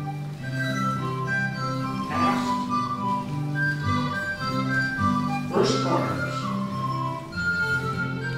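Live band playing a tune for English country dancing: a melody in long held notes over a steady bass line.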